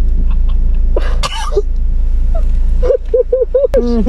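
A person coughing and gagging while a COVID-19 test swab is taken: a short burst about a second in, then a quick run of short choked vocal sounds near the end. A steady low hum from an idling car runs underneath.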